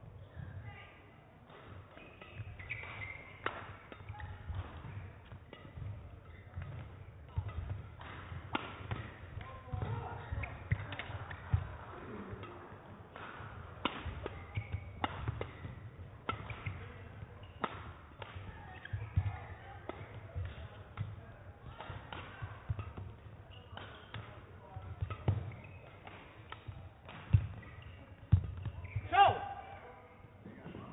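Badminton singles rally: a long, irregular run of sharp racket strikes on the shuttlecock, with players' footfalls thudding on the court floor.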